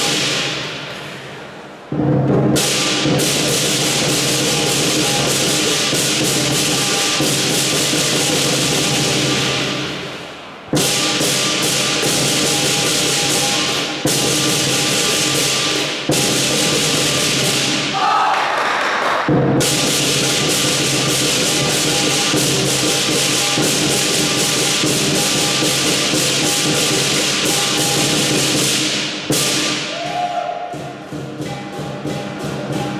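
Southern Chinese lion dance percussion: a large lion drum beaten with crashing cymbals ringing over it. The playing dies away about a second in and again near ten seconds in, each time starting up again abruptly.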